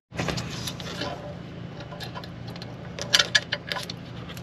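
A few sharp metallic clicks and clinks near the end, from a loose bolt and tools being handled while working on the airbox bolts, over a steady low hum.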